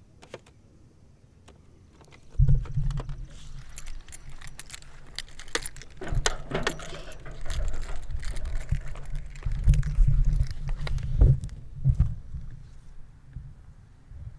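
Camera handling noise: rattling clicks and heavy low thuds and rumble as the camera is grabbed and moved. It starts about two and a half seconds in, is loudest in a few hard knocks towards the end, and dies down just before the end.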